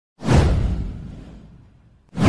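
A whoosh sound effect for an animated title intro: one swell that rises quickly a fraction of a second in, with a deep rumble under a hiss, then fades away over about a second and a half.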